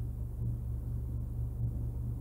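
A pause with no speech: only a steady low background hum, with a few faint ticks.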